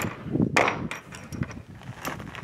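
Metallic clicking and clatter of a double-action revolver being unloaded, with spent .44 Magnum cases pushed out of the open cylinder. One sharp clack about half a second in, then lighter clicks.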